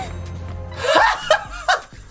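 Women laughing hard, breaking out about a second in, over low music.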